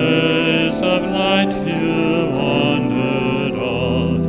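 Music in worship: slow singing, with notes that waver in pitch, over steady held notes.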